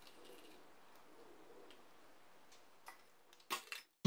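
Near silence, then a few light taps near the end: a clear plastic Easter-egg mould filled with white chocolate being knocked on a granite countertop to settle the chocolate.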